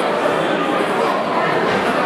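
Spectators in a hall talking and calling out at once: a steady crowd hubbub.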